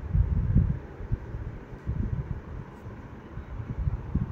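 Moving air buffeting the microphone: an uneven low rumble in gusts, strongest in the first second.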